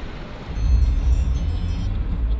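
Loud, uneven low rumble inside a vehicle's cab, starting about half a second in. Faint high tinkling tones sound briefly above it.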